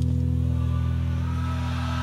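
A live band holding a low, sustained final chord of a rock ballad, steady and unchanging.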